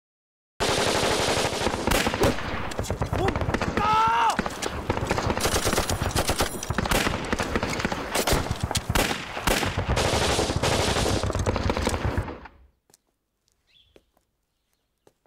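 Dense, rapid gunfire from rifles and automatic weapons in a battle, breaking out suddenly just after the start, with a voice shouting about four seconds in. The firing cuts off sharply near the end.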